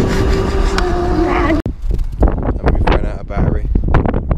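Electric dirt bike's motor whining at a steady pitch over trail and wind rumble while riding; it cuts off abruptly about a second and a half in. After that comes irregular wind buffeting on the microphone.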